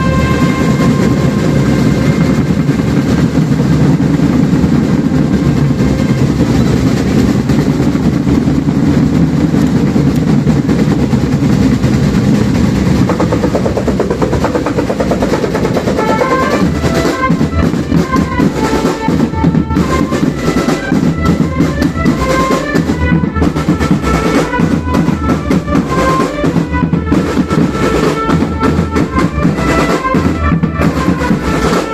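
Marching band: a fast, continuous roll and beat on marching snare, tenor and bass drums, with brass horns coming in about halfway through to play a melody over the drums.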